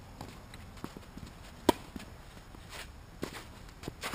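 Tennis rally: a racket strikes the ball with one loud, sharp pop a little under halfway in, followed by fainter pops of ball bounces and a distant racket hit later on.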